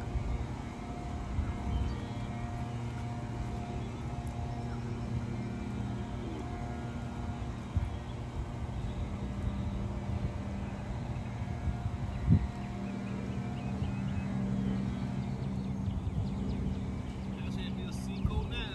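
Steady low drone of a distant engine, its hum growing stronger in the last few seconds, with a single sharp click about twelve seconds in.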